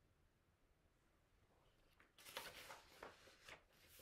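Near silence for the first half, then a short spell of paper rustling as a page of a picture book is turned.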